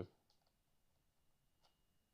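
Near silence: room tone with a few faint clicks from a computer mouse's scroll wheel.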